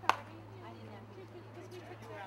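A single sharp knock right at the start, then faint distant voices over a steady low hum.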